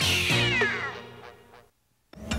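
The closing theme music ends on a cartoon cat's meow, a long call that falls in pitch, and the sound then fades to silence about a second and a half in.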